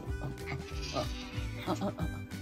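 A cat meowing in short cries, about a second in and again near the end, over background music.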